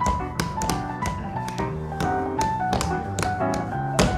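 Dance steps in heeled shoes tapping on a wooden stage floor, about three sharp taps a second, in time with piano music.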